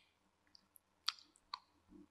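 Silicone spatula mixing soft cream cheese and melted butter in a glass bowl: a few faint sharp clicks of the spatula against the glass, two of them about a second in, and a soft squish of the mixture near the end.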